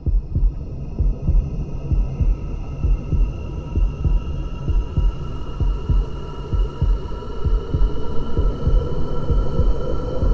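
Heartbeat-like low thumps repeating under a sustained high synth drone, the instrumental intro before the hip-hop track's verses begin.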